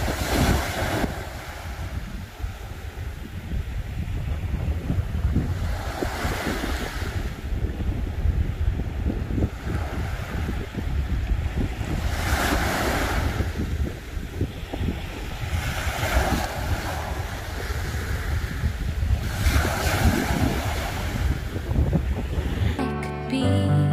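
Small sea waves breaking and washing up a sandy beach, a surge of surf every four to six seconds, over heavy wind rumble on the microphone.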